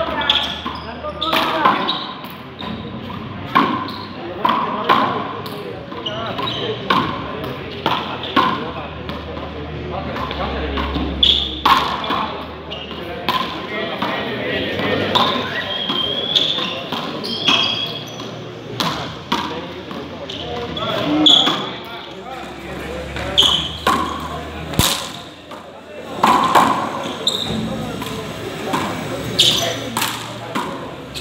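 A frontón rally: a ball being struck and smacking off the concrete walls and floor of the enclosed court, many sharp, echoing impacts a second or two apart.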